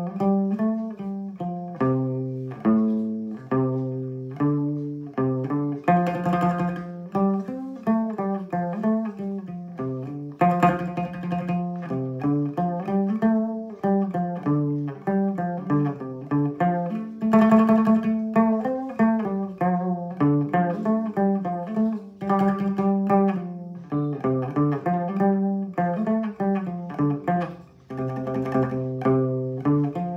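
Đàn nguyệt (Vietnamese two-string moon lute) plucked in a continuous melody of quick notes, played through its fitted pickup and a portable speaker, with a short break in the playing about two seconds before the end.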